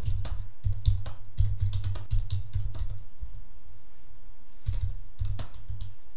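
Computer keyboard typing: a quick run of keystrokes for about three seconds, a short pause, then a few more key presses near the end.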